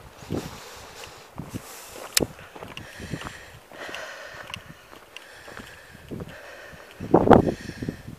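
Footsteps on a dirt and gravel farm track, irregular and faint, with one sharper click about two seconds in and a brief louder noise near the end.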